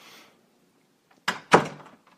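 A door closing: two quick knocks about a quarter of a second apart, roughly one and a half seconds in, the second one louder.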